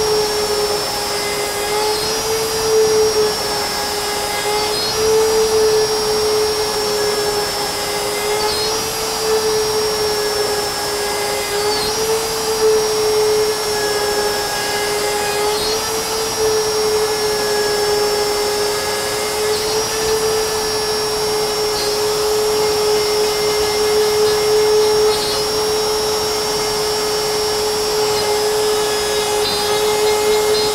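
DeWalt plunge router running at full speed with a steady high whine. Its pitch sags slightly every three to four seconds as the spinning straight bit is plunged repeatedly into the wood to rout out a mortise.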